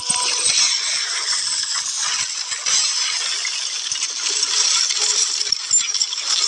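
Film action sound effects: a dense, continuous metallic rattling and clinking, thick with many small knocks.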